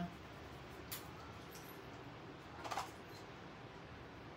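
Quiet room hiss with a faint tick about a second in and a brief soft scratch near three seconds in: a paintbrush working paint into fabric.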